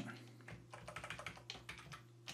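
Faint computer keyboard typing: a quick run of light key clicks starting about half a second in.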